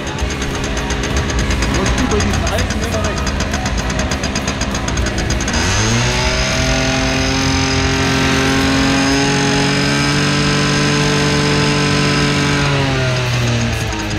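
Simson Schwalbe moped's single-cylinder two-stroke engine running unevenly at first, then revved up about six seconds in and held at high revs for about seven seconds before dropping back, while a sound level meter is held at its exhaust.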